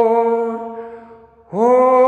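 A single male voice singing a slow hymn, holding one long, steady note that fades away, then starting the next long note about a second and a half in.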